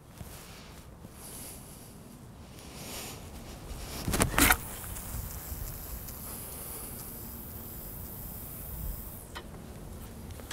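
A long-distance carp-rod cast. A short, loud swish comes about four seconds in as the rod is swung through. It is followed by a steady high hiss of line running off the fixed-spool reel, which stops after about four seconds.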